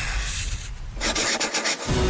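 A graphite pencil scratching across paper: a steady stroke, then a quick run of short sketching strokes in the second half.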